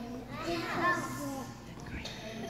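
A group of young children's voices together, loudest about a second in.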